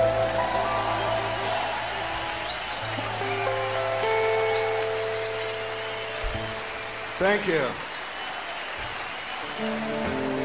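Hollow-body archtop electric guitar played slowly, single notes and chords left to ring, over held upright bass notes. A short gliding vocal call cuts in about seven seconds in, and the guitar picks up again near the end.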